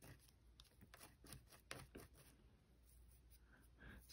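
Near silence with faint, scattered ticks of a fingertip flicking and rubbing the stiff bristles of a new acrylic nail brush, loosening the starch to break the brush in.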